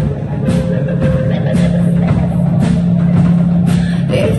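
Live rock band playing an instrumental passage on electric guitar, bass guitar and drum kit. Drum hits land about once a second, and a low note is held through the second half.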